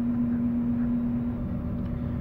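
Steady low rumble and hum of a cargo ship's machinery heard inside the wheelhouse while the ship is under way; the hum's steady tone fades a little over a second in.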